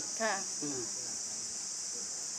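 A steady, high-pitched insect chorus running without a break.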